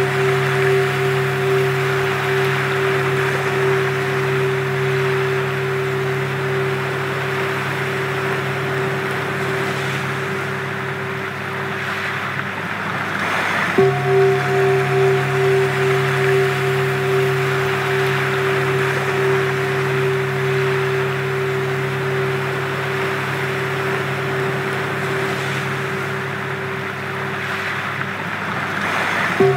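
Sound-healing track of several sustained pure tones held together, one of them beating in slow pulses, over a steady rushing wash like ocean surf. The tones drop out briefly about twelve seconds in, leaving only the rushing, come back about two seconds later, and fade again near the end.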